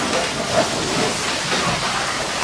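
Cardboard and large paper sheets rustling and scraping as a big cardboard box prop is handled, a steady crackling hiss throughout.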